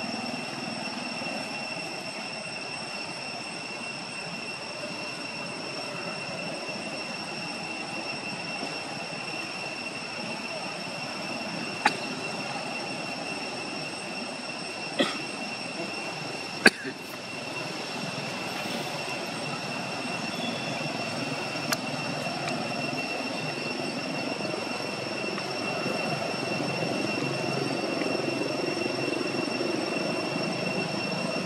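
Steady outdoor background: a continuous high-pitched whine with a lower rumble under it, broken by four sharp clicks near the middle.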